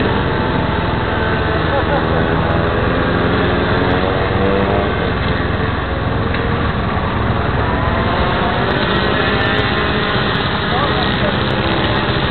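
Motorcycle engine running steadily with people's voices talking over it, heard through a cheap camera's muffled, narrow-band microphone.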